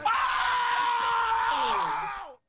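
A man's long scream of excitement at a big slot win, held for nearly two seconds and sliding down in pitch at the end.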